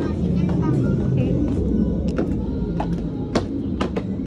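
Outdoor ambience: a steady low rumble of traffic with people talking, and footsteps clicking on wooden steps, about two a second in the second half.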